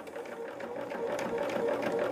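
Bernina sewing machine running steadily, stitching a seam through quilt fabric fed under the presser foot, with a rapid even ticking of the needle and a hum that grows slightly louder.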